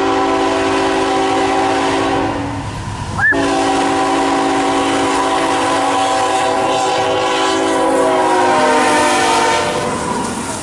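A CSX freight locomotive's air horn sounds a chord of several notes in two long blasts. The first breaks off a little after two seconds; the second starts just after three seconds and holds until near the end, growing louder as the train approaches. A sharp knock comes just before the second blast.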